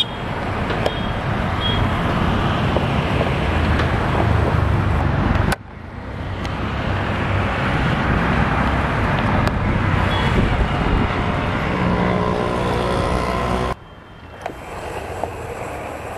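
Steady, loud running noise and wind rush of a train in motion, heard from on board. It drops off abruptly twice, the second time into quieter running with a few clicks near the end.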